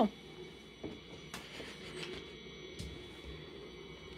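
Quiet room with a few faint, short clicks of dry dog kibble being handled in a plastic box.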